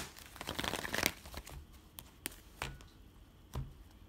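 Oceanic Tarot deck being shuffled, a rapid flutter of cards for about the first second, then a handful of short taps as the cards are split and set down on a cloth-covered table.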